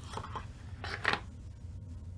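Hands handling a small cardboard box and its contents: faint rustling and scraping, with soft knocks about a fifth of a second and a second in.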